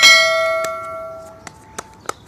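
Bell chime sound effect struck once, ringing with several overtones and fading over about a second and a half, with a few sharp clicks.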